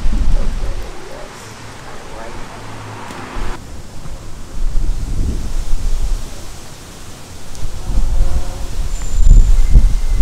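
Outdoor ambience dominated by wind buffeting the microphone, a deep rumble that surges in gusts, over a steady background hiss that changes abruptly about three and a half seconds in.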